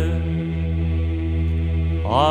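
Byzantine chant: a male voice holds one steady note over a low, unbroken drone (the ison), between ornamented phrases of the hymn.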